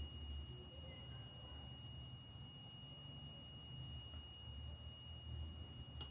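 Faint, steady high-pitched beep of a multimeter's continuity tester across a closed timer relay contact. It cuts off suddenly near the end, when the on-delay timer's preset time runs out and the contact opens.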